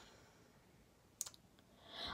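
Near silence: room tone, broken by a short, sharp click a little past a second in, followed by a fainter one.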